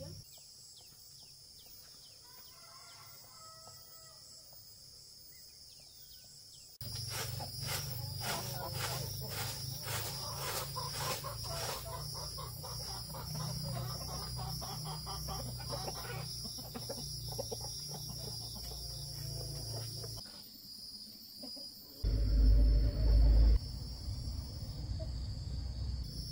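Domestic chickens clucking in a farmyard over a steady high insect drone; the first several seconds are quieter, with only faint chirps. Near the end comes a loud low rumble lasting about a second and a half.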